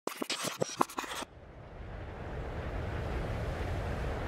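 A burst of sharp digital glitch clicks and crackles for about a second. Then a low rumbling noise fades in and grows steadily louder.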